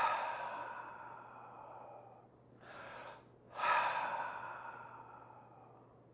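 A man taking deep, audible breaths: a long out-breath that starts strong and fades, then a shorter in-breath about two and a half seconds in, then a second long, fading out-breath.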